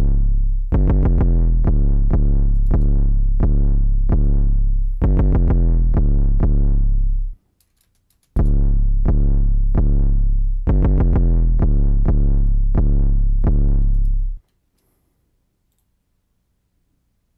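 A trap beat looping in FL Studio: a quick run of short pitched synth notes over a deep, sustained 808 bass. Playback stops about seven seconds in, starts again a second later, and stops for good about a second and a half before the end.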